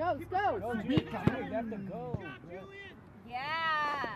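Indistinct shouts and calls from several voices at a soccer match, with two sharp knocks about a second in and one long drawn-out call near the end.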